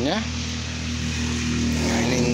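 A steady, low engine drone holding one pitch, like a motor running nearby, heard after a voice trails off.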